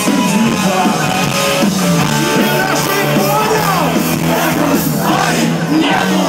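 Punk rock band with a violin playing live and loud: drums, electric guitar and violin, with singing over it.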